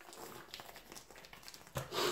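Faint, irregular crackling and rustling of a rabbit's skin and fur being peeled off the carcass by hand. A louder, short sound comes near the end.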